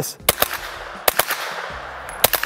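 Several suppressed 9mm shots from a Ruger PC Charger pistol with a Franklin Armory binary trigger, which fires once on the pull and once on the release. The shots come in quick, irregular succession.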